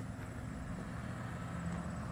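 Steady low rumble of quiet outdoor background noise, with no distinct events.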